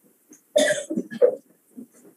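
A person coughing: a loud cough about half a second in, followed by a second, smaller rasp before the sound dies away.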